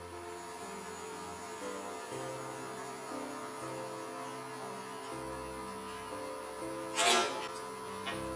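Background music with a steady hum underneath. About seven seconds in comes one sharp crack as the thin end-grain finial of a wooden ornament snaps off while spinning on the lathe.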